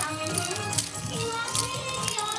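Yosakoi dance music playing loud, with the wooden naruko clappers of many dancers clacking sharply in time with it.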